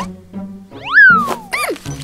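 Background cartoon music with a sound effect: a loud pitch glide that sweeps up and falls back about a second in, followed by a few quick falling chirps.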